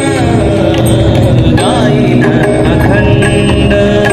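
Live devotional bhajan: a singing voice with sliding pitch over the steady drone of a harmonium, with tabla drumming, amplified through microphones and a PA.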